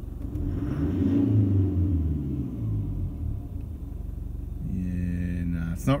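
Toyota 1KD-FTV turbo-diesel heard from inside the cabin, given one quick rev from idle. Engine speed rises for about a second, then falls back to idle over the next two.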